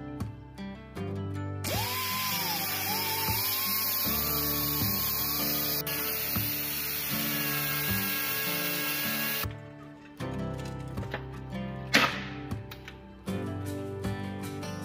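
Pneumatic die grinder with a small abrasive disc grinding the head off a steel tailgate-strap rivet. It runs for about eight seconds with a wavering whine that rises slowly under load, then cuts off suddenly. A single sharp knock follows a couple of seconds later, over background music.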